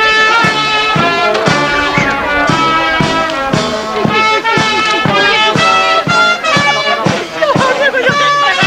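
Lively brass-band music with a steady beat of about three beats a second and held melody notes over it.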